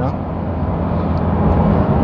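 Porsche 911 GT3 RS (991.2) naturally aspirated flat-six running steadily on the move, heard from inside the cabin and growing a little louder near the end.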